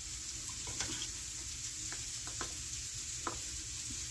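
Hands working over a sheet of buttered dough on a counter: a few soft taps and brushing sounds over a steady faint hiss.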